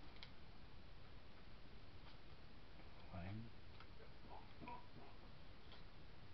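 Faint light clicks and rustles from hands handling paper, string and tape over a steady low hiss. A brief low voice sound comes about three seconds in.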